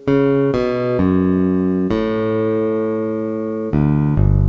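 Bass line played back at half speed: two short notes, a slightly longer one, then one held for nearly two seconds, with a new, lower note starting just before the end.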